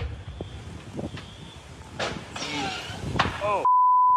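Steady rushing noise of a wind-driven wildfire broken by several sharp bangs, which the person filming takes for cars exploding, with a man's alarmed exclamations. Near the end a steady beep tone cuts in, a censor bleep over a word.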